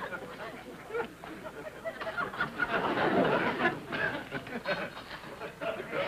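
Studio audience laughing and chuckling in scattered, uneven waves, swelling about halfway through.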